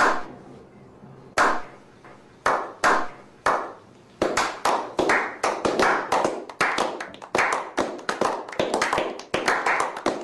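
Slow clap: single claps spaced about a second apart, then from about four seconds in several people join with faster, overlapping claps that build into a small round of applause.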